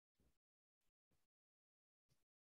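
Near silence, broken by three very faint, brief blips of sound.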